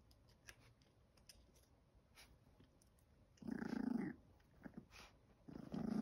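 A chihuahua puppy growling: a short low growl about halfway through, then another that starts near the end and carries on. It is a warning over a chew treat that its littermate is going for.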